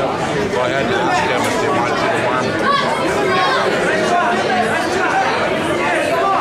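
Crowd chatter: many spectators' voices talking over one another at a steady level.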